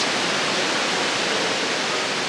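Steady rushing of falling water from an indoor waterfall or fountain, an even wash of noise with no breaks.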